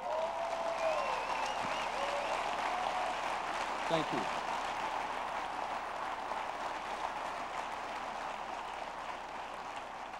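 Audience applauding, starting as the story's punchline ends and slowly tapering off, with a few voices rising above the clapping in the first couple of seconds.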